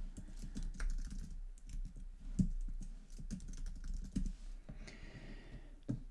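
Computer keyboard being typed on: a quick, irregular run of keystroke clicks as text is entered.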